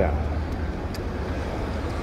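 City street traffic noise: a steady low rumble of cars on the road.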